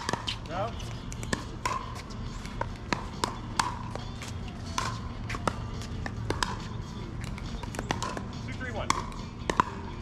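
Pickleball paddles striking the hollow plastic ball: sharp pops with a short ring, coming at irregular intervals as the rallies go back and forth on this court and the ones beside it.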